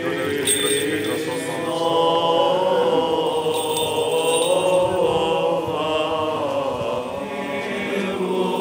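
Serbian Orthodox liturgical chant: voices singing a slow hymn in long, held notes that shift gently in pitch.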